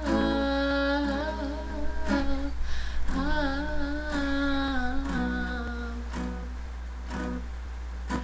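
A woman humming a wordless melody with vibrato over a strummed acoustic guitar. The humming fades after about five seconds, leaving the guitar alone.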